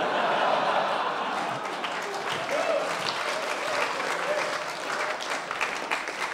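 Comedy club audience applauding after a punchline, loudest at the start and easing off slightly.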